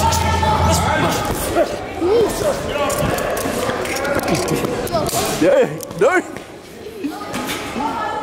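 Busy boxing-gym din: short shouted calls over scattered thuds and smacks of training.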